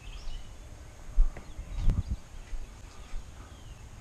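Outdoor ambience: low thumps and rumble on the microphone of a camera carried by hand, with a sharper knock a little under two seconds in, and faint bird chirps.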